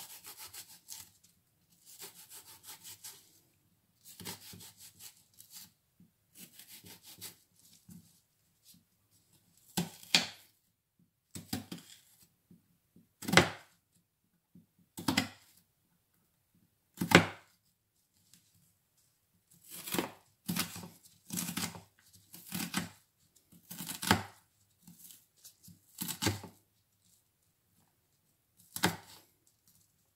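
Kitchen knife dicing a red onion on a wooden cutting board: a few seconds of quick, light slicing, then separate knocks of the blade on the board, a second or two apart.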